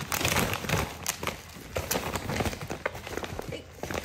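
Tissue paper and a paper gift bag crinkling and rustling in quick, irregular bursts as a dog roots into the bag with its nose and a hand pulls the tissue apart.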